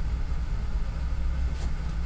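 A steady low rumble with no speech.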